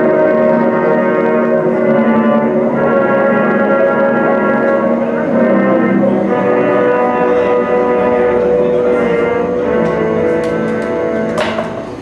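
Live electronic noise improvisation on a tabletop setup: dense layered droning tones and chords, held and shifting every second or two. Near the end a sharp burst of noise cuts through, and the sound then gets quieter.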